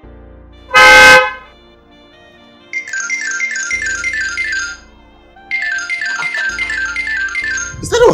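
A car horn gives one short honk about a second in. Then a mobile phone ringtone plays in two spells of about two seconds each, rapid repeated electronic chirps at about five a second, over soft background music.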